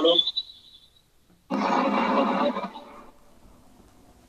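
A person's voice in two short stretches, one ending just after the start and a longer one from about a second and a half in, then quiet.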